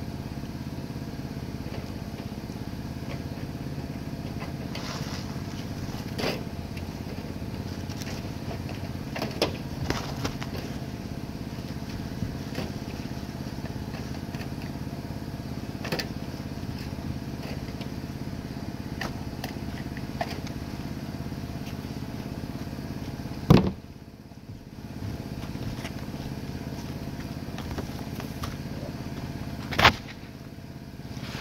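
An air compressor feeding roofing nailers runs with a steady low drone. Scattered light clicks sound over it, with a sharp bang about two-thirds of the way in and another at the very end.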